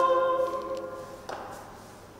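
A man's and a woman's voices, with keyboard accompaniment, hold the final sung note of the duet, which fades away over about a second. A faint brief noise follows, then room tone.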